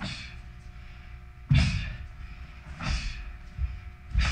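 A taekwondo practitioner's movements while performing a pattern: sharp thuds of feet striking down on the floor and the snap of the uniform with each technique. Three strikes, each with a short rush of noise that fades out, the loudest about a second and a half in.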